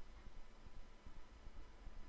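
Quiet room tone: a low steady hum with a few faint soft ticks.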